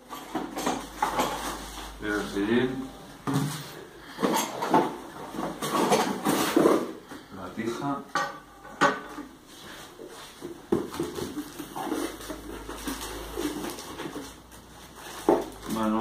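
Cardboard box being opened and handled: flaps rustling and scraping, with irregular knocks and clatter as bicycle parts are taken out and set down on a table.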